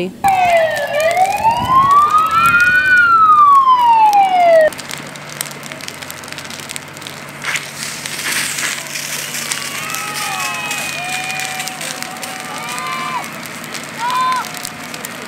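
An emergency vehicle's siren wails in one slow sweep, down, up and down again, for about four and a half seconds and then cuts off abruptly. After it comes a quieter stretch of outdoor noise with a few faint, short shouts.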